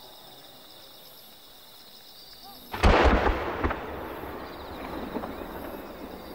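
Six 30 cm (10-go) firework shells fired at once from their mortars: one loud boom about three seconds in that rumbles and echoes for about a second, followed by a few smaller cracks as the shells climb.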